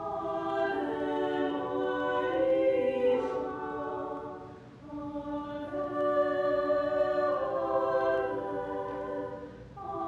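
Choir singing a slow hymn a cappella in two long phrases of held notes, each dying away at its end.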